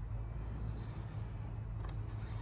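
Marker pen drawing a line along a square across an aluminium sheet, faint under a steady low hum.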